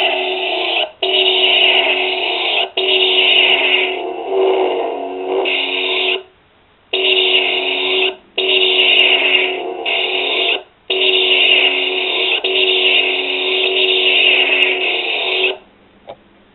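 A homemade toy blaster's built-in speaker playing electronic sound effects: a run of loud bursts, each one to three seconds long, with short breaks between them and a longer break of almost a second about six seconds in.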